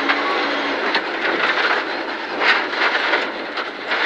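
Rally car running flat out on a gravel stage, heard from inside the cabin: steady tyre and gravel noise with the engine, the engine's note dropping away under a second in as the car slows from about 130 to 90 km/h for the next corner.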